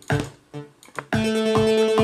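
Electronic dance loop played back from Logic Pro: a steady four-on-the-floor bass drum under synthesizer arpeggio notes. The loop thins out briefly about a quarter of a second in. Just after a second in it comes back fuller, with a held synth chord over the kick.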